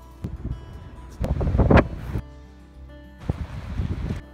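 Background music with sustained tones throughout, overlaid by short one-second bursts of location sound that change with each cut. The loudest is a rushing noise around the middle, and near the end there is wind buffeting the microphone.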